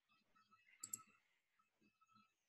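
Near silence broken by two quick computer mouse clicks, a tenth of a second apart, about a second in.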